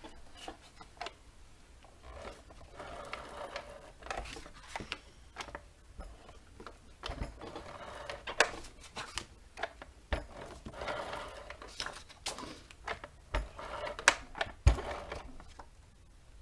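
Sheets of paper and cardstock being handled on a cutting mat: several stretches of rustling and sliding, with scattered sharp clicks and knocks, the loudest a knock near the end.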